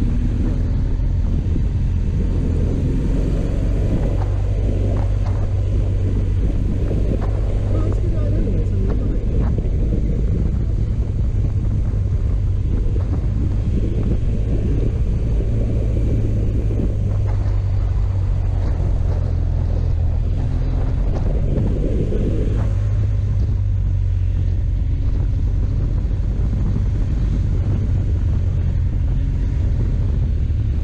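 Motorcycle engine running steadily under way, a constant low rumble, with wind rushing over the microphone.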